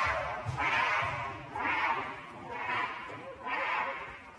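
Gorilla screaming angrily in harsh repeated bursts, about one a second, during an aggressive chase.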